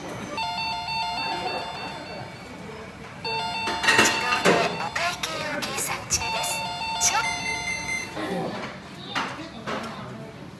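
A short electronic chime jingle of steady, bright tones plays three times, about three seconds apart, over background chatter and a few clatters.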